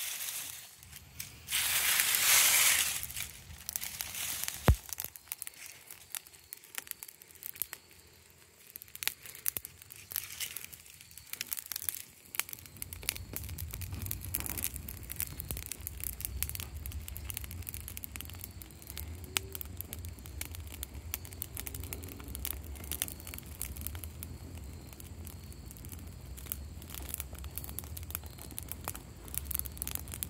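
Dry leaves burning in a mud-walled fire pit, crackling and popping with many small sharp snaps throughout. There is a brief loud rustle of dry leaves about two seconds in, and from about halfway a low steady rumble joins.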